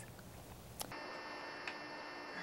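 Quiet room tone, then a sharp click about a second in where the sound cuts over to a steady electrical hum with a faint high whine, and an occasional faint tick.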